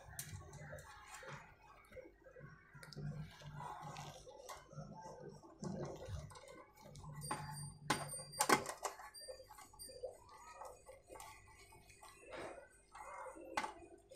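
Small screwdriver turning a fan screw into the sheet-metal casing of a computer power supply: faint scraping and ticking, with two sharp clicks about eight seconds in.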